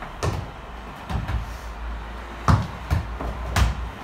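A ball being kicked and bouncing on a gym floor: a string of sharp thuds, about five in four seconds, two of them close together near the end.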